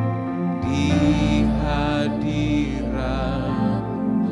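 Slow, soft worship music on a Yamaha keyboard with sustained chords and a deep bass note. From about a second in, a voice holds long sung notes with vibrato over it.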